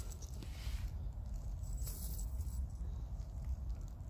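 Gusty wind buffeting the microphone: a low, unsteady rumble that rises and falls with the gusts.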